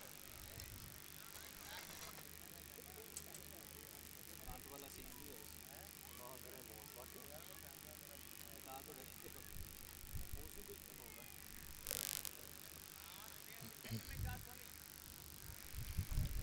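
Faint cricket-ground ambience: distant voices over a low, regular pulse, with a few soft thumps and a brief burst of noise about twelve seconds in.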